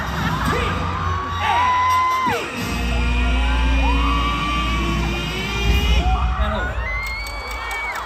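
Concert crowd screaming and cheering over bass-heavy music from the venue's sound system. The deep bass comes in strongly a couple of seconds in.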